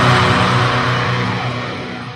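Final distorted chord of a heavy metal song ringing out and fading steadily, with no more drum hits.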